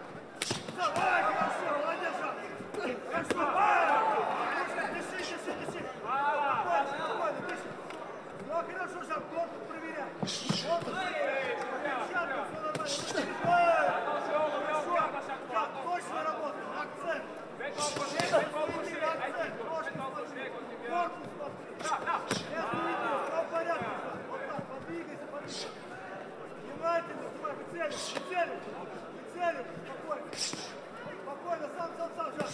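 Voices of cornermen and spectators shouting during a kickboxing bout, with several sharp slaps of strikes landing on gloves or bodies, spaced a few seconds apart.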